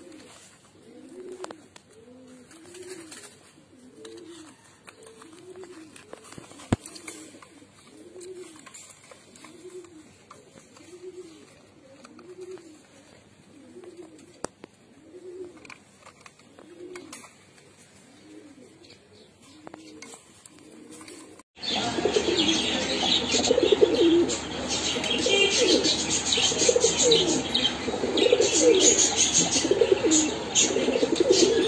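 Domestic fancy pigeons cooing. At first there is a regular run of soft, rising-and-falling coos about one a second. About two-thirds of the way through it switches abruptly to louder, busier, overlapping cooing.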